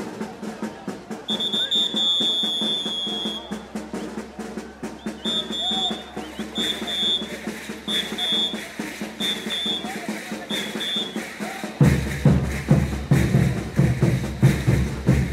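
Caporales band music with drums. A whistle gives one long blast, then a string of short, evenly spaced blasts. Near the end the band comes in loud with heavy drums.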